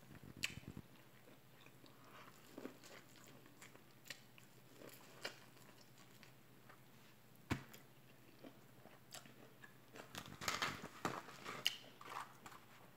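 Faint chewing and biting on a crisp-fried chicken wing, with scattered crunches and a denser run of crisp clicks near the end.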